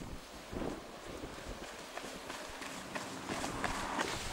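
A person running on a tarmac road, footfalls about three a second, growing louder towards the end as the runner comes close, over a steady hiss.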